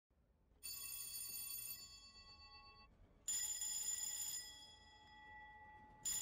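Ship's electric alarm bells ringing in two short bursts of about a second each, each ringing out as it fades; the second bell has a different tone from the first.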